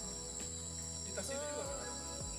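A steady, high-pitched chorus of insects, crickets or cicadas, trilling continuously.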